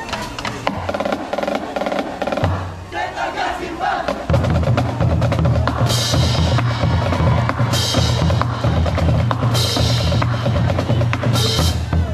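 Marching band drum line of bass drums, snare drums and crash cymbals playing a cadence: rapid snare strokes over a bass drum pulse that settles into a steady beat about a third of the way in, with a cymbal crash about every two seconds in the second half.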